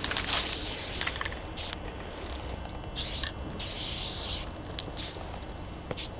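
Aerosol spray paint can hissing in separate bursts as a tag is sprayed: a long spray at the start, a short one about one and a half seconds in, a longer one from about three to four and a half seconds, and a brief one near five seconds.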